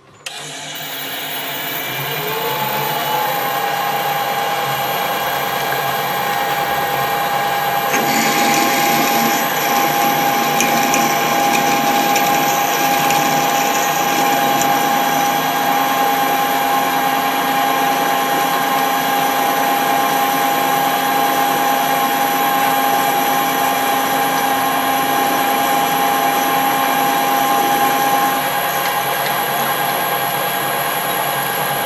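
Metal lathe started up, its whine rising as the chuck spins up to speed and then running steady. From about eight seconds in, a twist drill in the tailstock bores into the end of the steel bar, adding a rougher cutting noise over the whine. Near the end one of the tones drops out and the sound eases slightly.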